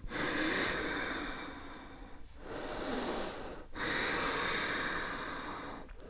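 A woman breathing slowly and deeply and audibly: three long breaths, the middle one shorter, while holding a yoga pose.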